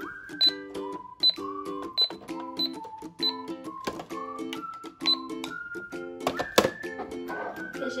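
Toy Barbie cash register beeping in short high blips as its keys are pressed and its scanner is used, over steady background music; a sharp knock about two-thirds of the way through is the loudest sound.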